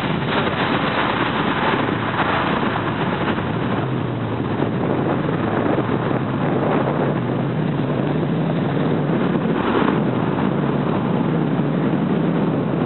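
A car driving at steady speed: a constant rush of road and wind noise with a low engine hum underneath, even throughout.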